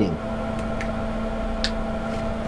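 Carving knife making small cuts in basswood: two short, faint clicks, the second one crisper, over a steady background hum.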